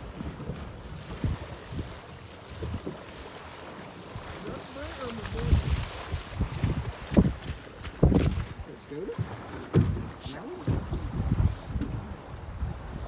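Wind buffeting the microphone in uneven gusts, with water sloshing as a hunter wades through knee-deep shallows. Faint, indistinct voices come and go under the wind.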